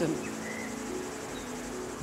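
Steady creekside ambience: insects chirring high and even over a faint rush of flowing water, with soft sustained background-music tones underneath.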